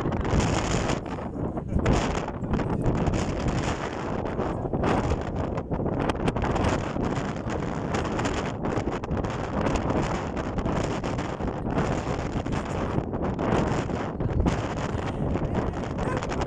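Wind buffeting a phone's microphone on an open ferry deck: a rough rushing noise that keeps rising and falling in gusts.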